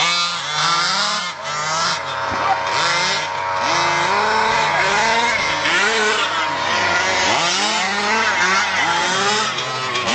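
Two-stroke petrol engines of 1/5-scale HPI Baja 5B SS radio-controlled buggies, one of them a fully modified 30.5 cc engine, revving hard on the track. The engine pitch rises and falls over and over as the cars accelerate and lift off, with more than one engine heard at once.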